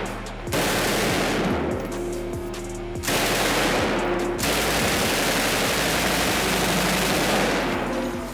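Belt-fed light machine gun firing long bursts of full-auto fire, almost without a break from about half a second in until just before the end.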